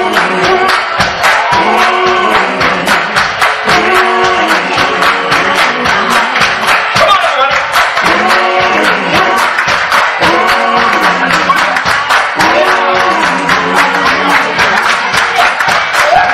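Live band members clapping their hands in a steady beat while several voices sing together into microphones over it, with a room's echo.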